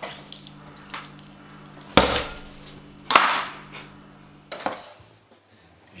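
Food preparation on a tabletop: a handful of sharp knocks and clatters, the two loudest about two and three seconds in, over a steady low hum.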